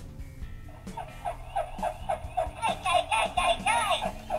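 Hasbro Mighty Morphin Yellow Ranger Power Morpher toy playing its secret sound through its small speaker: Alpha 5's 'Ay-yi-yi-yi' cry, set off because the plates are held shut while being pushed open. The cry starts about a second in as a quick string of short yelps, about four a second.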